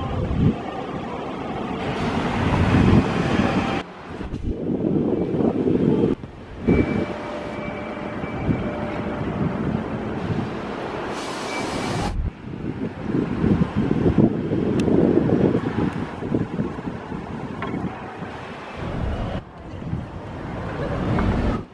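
Night city street ambience: passing car traffic and a general low rumble, with wind buffeting the microphone. The background changes abruptly several times.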